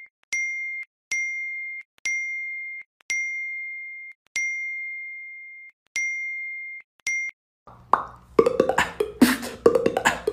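A phone's notification tone pinging over and over: about seven identical high pings, each cut off as the next one comes in, roughly a second apart with some held longer. Near the end, a person beatboxing takes over.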